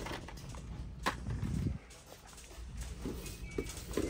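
Low steady background hum of a store aisle with a few light clicks and a muffled knock from handling plastic toy packaging and the camera.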